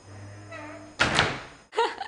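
Wooden wardrobe door pulled shut from inside, closing once with a sharp bang about a second in that rings away briefly.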